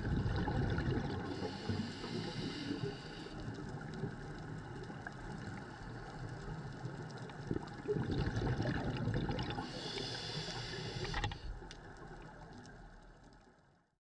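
Scuba diver's regulator breathing and exhaust bubbles heard underwater, in two breaths about eight seconds apart, each a low rush followed by a higher hiss. The sound fades out near the end.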